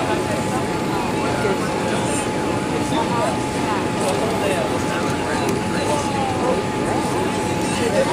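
Steady cabin roar of a Boeing 787-8 Dreamliner on final approach, engine and airflow noise heard from a window seat over the wing, with a thin steady whine running through it.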